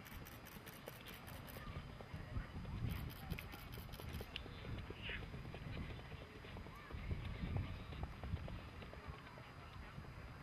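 An Icelandic horse's hooves beating on a gravel riding track in quick, even runs of clip-clop as the stallion is ridden past at speed.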